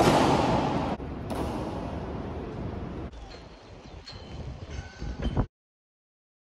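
A sudden loud bang that rings on in a long echo, followed by the steady room noise of a large echoing hall; the sound cuts off to silence about five and a half seconds in.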